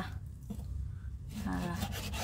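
Kitchen knife slicing raw beef into thin strips on a wooden cutting board: quiet strokes of the blade through the meat and against the wood.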